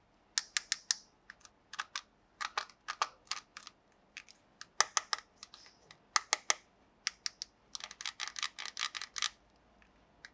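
Hard plastic toy pieces clicking and tapping as they are handled, in a string of short, sharp clicks at an uneven pace, with a quick run of clicks about eight seconds in.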